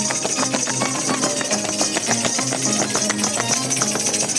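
Andean festival dance music: plucked string instruments playing short repeated notes over a steady, even rhythm.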